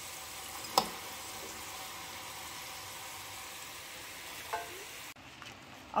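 Potato cubes sizzling steadily in hot vegetable oil in a frying pan, with a single knock of a metal slotted spoon about a second in. The sizzle stops abruptly about five seconds in.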